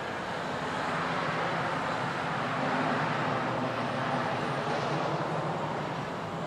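Front-loader garbage truck's diesel engine running as the truck lowers its forks and pulls away from the dumpster, a steady rumble that swells a little in the middle.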